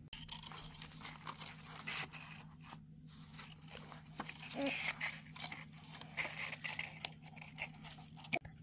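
Hands fitting and pressing the cardboard sails of a craft-kit windmill onto its foam sail wheel. The handling makes a string of small, irregular rustles, scrapes and taps of card and paper.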